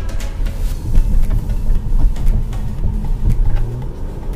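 An Audi A7 being driven at low road speed, its engine and road noise heard from inside the cabin as a steady, heavy low rumble.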